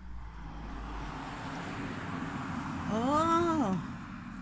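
Steady low street rumble from outside an open window. Near the end comes one drawn-out whine that rises and then falls in pitch, lasting under a second.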